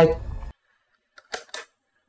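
A man's voice trails off on one word, then near silence broken by two or three short clicks about a second later.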